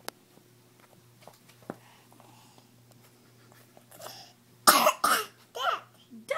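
A few faint clicks, then a person coughing near the end: two loud coughs in quick succession and a softer third.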